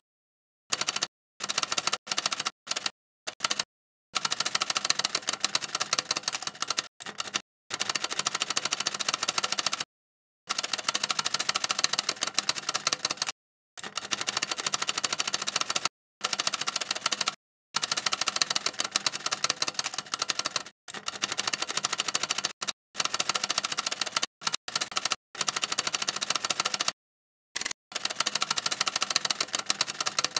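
Typewriter key-clatter sound effect: fast continuous keystrokes in runs of one to three seconds, each cut off by sudden short silences.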